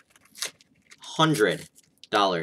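A short crinkle of a foil Pokémon booster-pack wrapper being torn, which is hard to open and has ripped wrong. A brief voiced sound follows a moment later.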